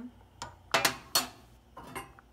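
A slotted spatula clattering on a gas stove's metal burner grate as it is handled: a handful of sharp clacks, the loudest three close together around the middle.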